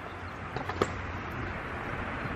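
Steady outdoor background noise, an even low rush, with two faint clicks about half a second and nearly a second in.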